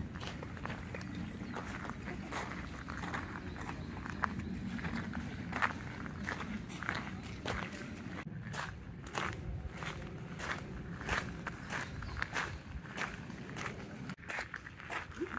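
Footsteps crunching on loose gravel, a steady walking pace of about two steps a second, over a low steady rumble.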